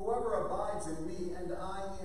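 A man speaking, reading scripture aloud.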